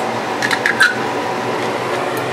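A few brief clicks about half a second to a second in, a utensil working in a jar of chocolate sauce, over a steady room hum.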